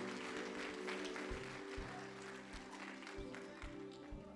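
Soft background music of held, sustained chords, with light clapping over it.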